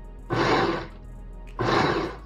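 Oster blender base driving a food-processor bowl in two short pulses about a second apart, chopping warmed whole almonds into crumbs.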